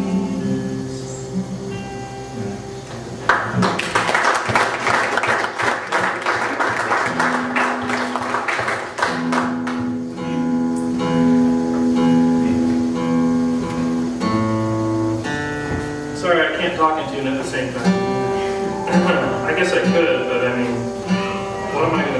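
The final chord of an acoustic guitar rings out, then a small audience applauds for several seconds. After that the acoustic guitar is retuned: single strings are plucked and held over and over, then chords are strummed to check them. The steel strings have gone out of tune in the humid room.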